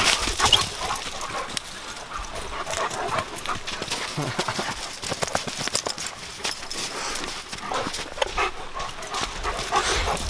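A vizsla and two other dogs playing rough on crusty snow: irregular scuffling and crunching of paws, with brief dog vocal sounds.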